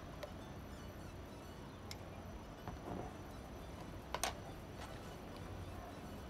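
A few faint clicks and taps of metal spoons against jars as coconut oil and baking soda are scooped. The loudest comes about four seconds in.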